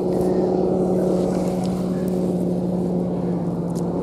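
An engine running steadily, a constant hum that holds one pitch.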